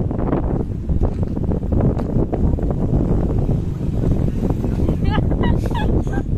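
Strong wind buffeting the microphone: a loud, steady low rumble. A person's voice cuts through briefly near the end.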